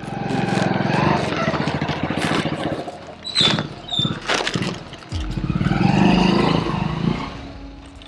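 Motorcycle engine running, then revving up again and pulling away, fading out near the end, with a few sharp clicks in between.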